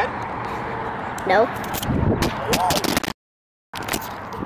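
A few short, high-pitched vocal sounds, not words, over a steady hiss of wind and handling noise on the microphone. The sound cuts out completely for about half a second near the end.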